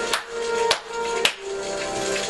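Slow hand clapping, three sharp claps about half a second apart that stop before the end, over music.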